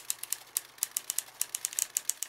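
A rapid, irregular run of sharp clicks, about eight a second.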